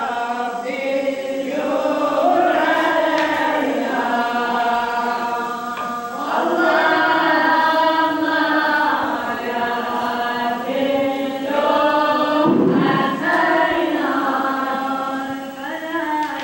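Recorded Sufi dhikr chant, Algerian in style: sung devotional poems of love for God and the Prophet, in long, ornamented melodic phrases with short breaks between them, played back through a portable stereo in the room.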